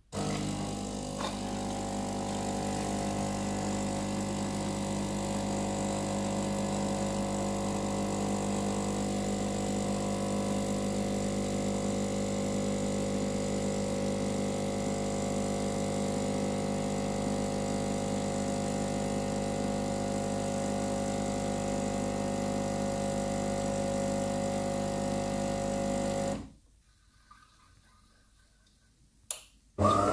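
De'Longhi ECAM 23.120.B bean-to-cup coffee machine's pump running while it dispenses coffee: a steady, even hum that starts suddenly and cuts off suddenly a few seconds before the end, followed by a single click.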